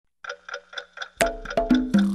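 A clock ticking, four even ticks about four a second, then music with plucked notes comes in about a second in.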